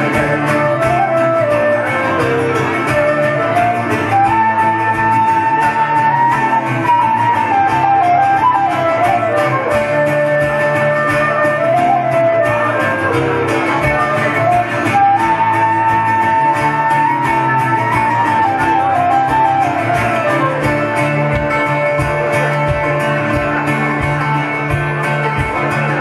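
Live Celtic folk band in an instrumental break: a transverse flute carries the melody in rising and falling phrases over strummed acoustic guitar and a mandolin-family instrument, with a fiddle. The flute drops out near the end.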